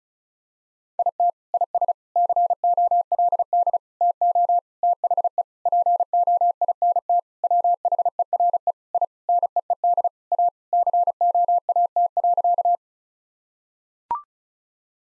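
Machine-generated Morse code sent at 35 words per minute: a single steady tone near 700 Hz keyed in rapid dots and dashes for about twelve seconds, spelling out the sentence 'It is cold to the point where I need a coat.' A brief higher beep, the courtesy tone marking the end of the sentence, comes right at the end.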